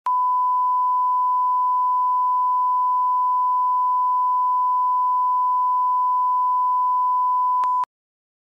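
A steady 1 kHz line-up tone, the reference tone laid under colour bars at the head of a programme tape for setting audio levels. It holds one unchanging pitch, then dips briefly and cuts off just before the end.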